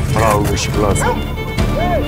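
Dogs barking and yelping in short arching calls, one near the end, over a steady trailer music bed and a man's voice.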